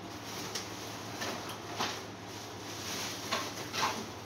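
A few soft clicks and rustles, about five spread over the seconds, above a low steady hum: handling noise as a bassoon is readied, just before it is played.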